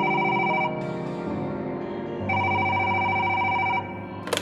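A telephone ringing twice: the first ring stops under a second in, and the second starts a little past two seconds and lasts about a second and a half. Low background music runs beneath.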